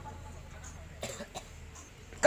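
A lull with a low steady hum, broken about a second in by a person's short cough, twice in quick succession.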